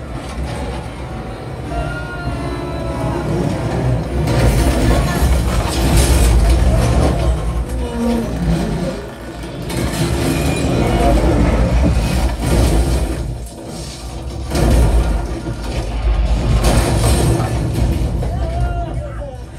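A movie soundtrack played through home-theatre speakers: orchestral music over a deep rumble of vehicle and wind noise, swelling and dipping in loudness several times.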